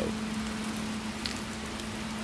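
Steady background hiss with a constant low hum underneath.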